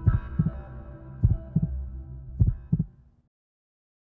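Heartbeat-like double thumps, three pairs a little over a second apart, over a steady synthesized drone in a TV channel ident. It dies away about three seconds in.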